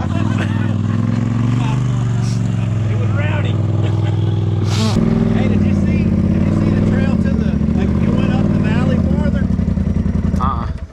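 Off-road vehicle engine idling steadily close by, with people talking and laughing over it. The engine note changes abruptly about halfway through.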